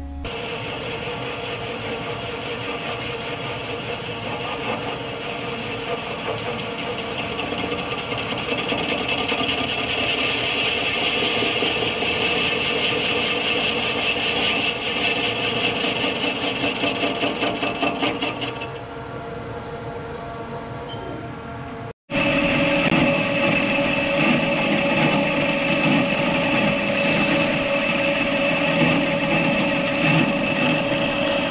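Haas TL-2 CNC lathe spindle running with the workpiece spinning as the lathe bores out a welded-in repair ring in a hydraulic swivel housing: a steady machine whine with cutting noise. It grows louder with a fast flutter for several seconds past the middle, then eases off. It breaks off suddenly about three-quarters through and resumes louder, with a steady whine.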